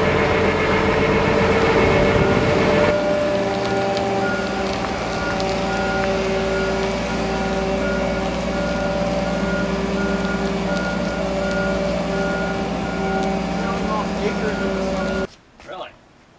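Boat travel lift's engine running steadily with a hum and held whine while it drives with a sailboat in its slings; from about three seconds in its motion alarm beeps evenly, a little more than once a second. The sound cuts off sharply just before the end.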